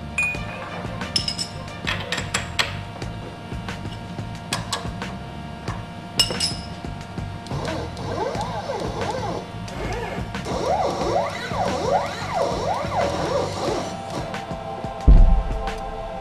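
Background music with intermittent metallic clinks and knocks as tooling is handled at a milling machine's spindle chuck, with a dull thump near the end.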